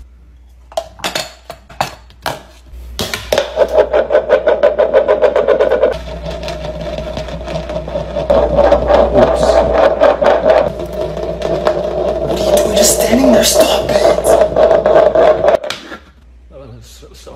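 Dishes clatter as a cup is pulled from a dish rack, then a bowl spins and wobbles on a hard tile floor: a fast, even rattle with a ringing tone that runs on for several seconds and cuts off suddenly near the end.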